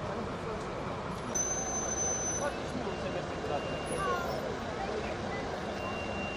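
Steady roadside traffic noise, a low rumble of vehicle engines, with faint, indistinct voices of people at the scene.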